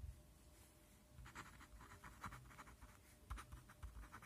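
Faint scratching of a pen writing on paper, a run of short quick strokes starting about a second in as a word is written out.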